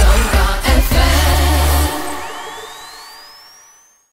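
Radio station ident jingle: pop music with a sung line and heavy bass that stops short about two seconds in, then fades away under a single rising synth sweep.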